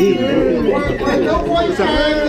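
Many people talking at once in a crowded room: overlapping voices of a group chatting and greeting each other.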